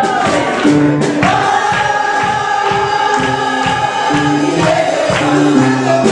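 Choir singing a gospel worship song with instrumental accompaniment, holding long notes over a moving bass line and a beat.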